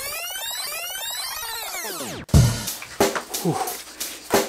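A transition sound effect: a sweep of many pitches rising and then falling, cut off abruptly about two seconds in. Music with a heavy drum beat follows.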